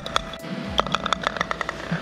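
Mini-golf ball dropping into the metal hole cup: a sharp click as it lands, then a quick run of light clicks and rattles with a slight metallic ring.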